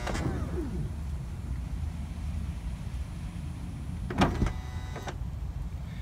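Power sliding door closer of a 2006 Honda Odyssey running with a steady motor hum as it pulls the already-closed door in too far and strains. About four seconds in it lets go with a sharp clunk, then a second click. The owner traces the overdriving to the latch and closer assembly inside the door needing lubrication.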